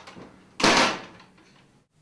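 A front door with an oval glass pane shuts once, about half a second in, with a short loud sound that dies away quickly.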